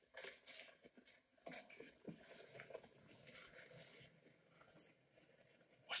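Near silence: a film soundtrack playing faintly through a tablet's speaker, with scattered soft rustles and taps.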